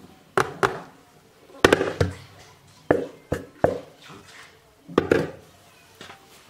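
Plastic mixing bowl knocked against the rim of another plastic bowl to tap out flour: about nine sharp knocks, spaced unevenly, some in quick pairs.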